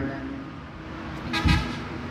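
A pause in a man's sermon over a loudspeaker system: his voice trails off into low, steady background noise, broken by one short sound about a second and a half in.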